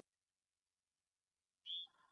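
Near silence, with one brief faint hiss near the end.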